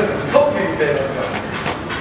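Laughing, chattering voices over a continuous rattle from a plastic basket holding PET bottles, jostling as it is carried at a run over dirt ground.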